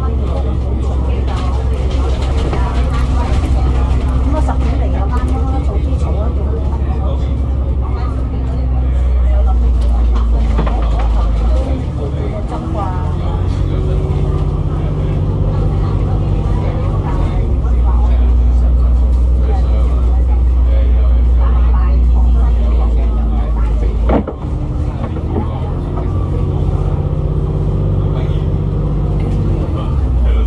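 Alexander Dennis Enviro500 MMC double-deck bus under way, its Cummins ISL8.9 diesel engine and Voith DIWA automatic gearbox running with a loud, steady low drone. The engine note drops and then climbs again twice, about twelve seconds in and again near the end, as the gearbox shifts, and a single sharp knock sounds about three-quarters of the way through.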